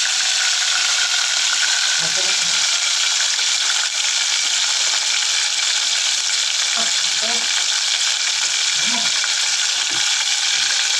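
Chicken frying in hot oil with a bundle of lemongrass in an aluminium pot on a gas burner: a steady sizzle.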